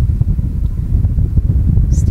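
Steady low rumble on the Falcon 9 second stage's onboard camera feed while its Merlin Vacuum engine burns.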